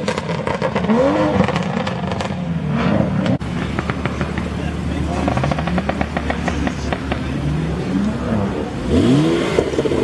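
Performance car engines revving and accelerating away. A Honda Civic Type R's turbocharged four sounds first in short rising-and-falling blips; then, after a sudden cut a little over three seconds in, a BMW Alpina B3 Biturbo's twin-turbo straight-six revs up in several rising sweeps as it pulls away.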